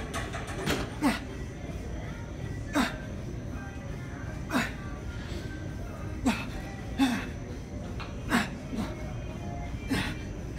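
A man grunting with effort, short falling groans every second or two, as he strains to push up under weight plates stacked on his back. Background music plays underneath.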